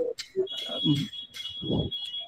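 A faint, broken voice coming over a poor video-call connection, with a steady high-pitched electronic tone that sets in about a quarter of the way through.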